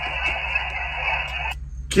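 Hiss of HF band noise from a Guohetec Q900 transceiver's speaker, received on 17 metres upper sideband. It cuts off abruptly about one and a half seconds in as the radio is keyed to transmit.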